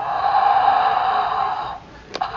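Electronic dinosaur roar played through the small speaker of a Mattel Jurassic World sound-feature dinosaur toy: one roar lasting nearly two seconds, cutting off just before the end.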